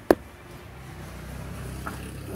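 A single sharp knock right at the start, then a faint, steady low hum.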